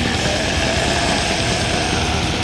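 Raw black/death metal demo recording: a dense, continuous wall of heavily distorted guitar and drums at steady loudness, with no break.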